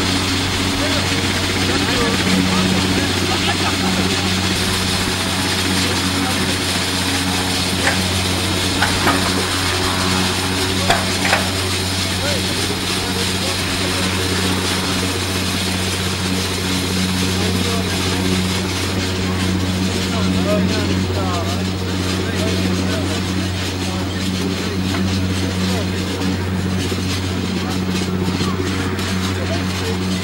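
Steady engine drone with a low hum running throughout, with a few short clicks about eight to eleven seconds in.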